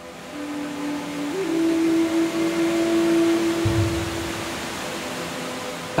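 Trailer soundtrack: one long held note over a low drone, laid over a steady hiss of falling rain that swells in the first couple of seconds, with a single low boom about two-thirds of the way through.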